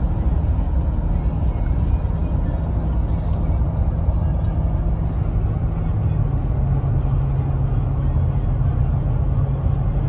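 Steady low road and drivetrain rumble inside the cabin of a 2022 Jeep Wagoneer with the 5.7 eTorque Hemi V8, cruising at about 70 mph while towing a car-hauler trailer.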